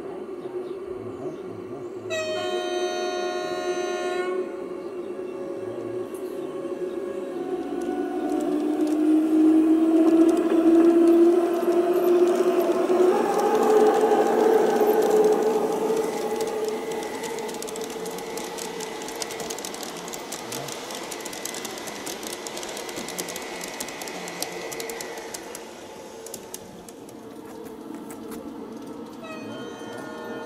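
G-scale LGB model of a Rhaetian Railway electric train: about two seconds in, its sound module gives a single horn blast of about two seconds. Then the motor and gear whine rises in pitch and grows loudest as the train runs past close by, and fades to a thin steady whine.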